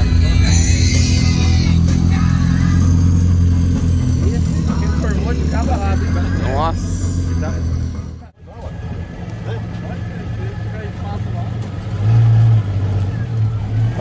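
Willys Jeep engine running with a steady low rumble as it pulls away. After a sudden cut, a second car's engine rumbles, swelling briefly near the end.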